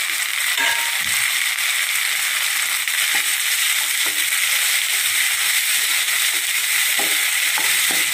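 Oil sizzling steadily as chopped tomatoes and onions fry in a nonstick kadai, with a few soft knocks of a wooden spatula stirring them.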